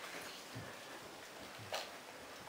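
Quiet room with a few faint soft thuds of footsteps on carpet, and a brief rustle near the end.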